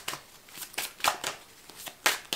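A tarot deck being shuffled by hand: an irregular run of short card slaps and clicks, several a second.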